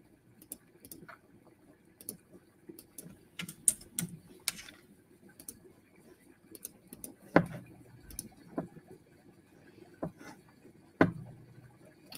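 Scattered, irregular clicks and taps of a computer keyboard and mouse as a countdown timer is set, with a couple of louder knocks about seven and eleven seconds in.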